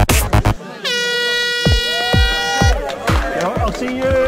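Air horn giving one steady blast of about two seconds, the starting signal for a race, sounding just after loud electronic music cuts off. A crowd's voices follow.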